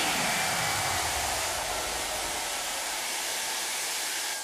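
Stage CO2 jets firing: a steady, even hiss of gas venting.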